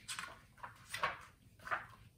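Page of a picture book being turned: a few short papery rustles.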